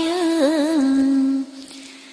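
A woman's voice chanting Vietnamese verse, holding one long note at the end of a line with a wavering turn partway through, then stopping about a second and a half in.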